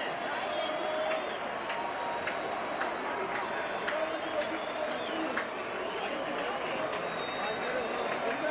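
Ballpark crowd: a steady din of many people talking at once in the stands, with scattered sharp claps or knocks.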